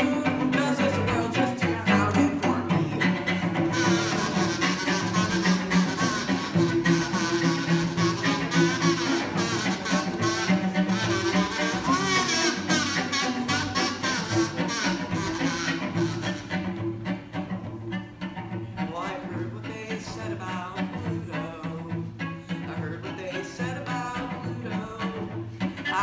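Cello bowed in a steady sustained line over low double bass notes. About two-thirds of the way through the upper sounds fall away and the playing gets quieter.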